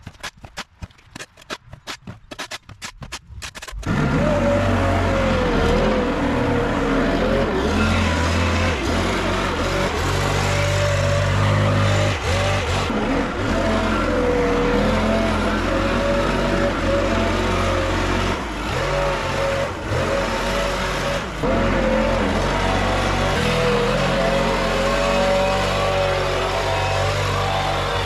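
For the first few seconds, scrapes and clicks of a shovel clearing dirt off concrete. Then, about four seconds in, a Stihl backpack leaf blower's two-stroke engine comes in loud and runs hard to the end, its pitch wavering up and down, with a few brief drops in sound.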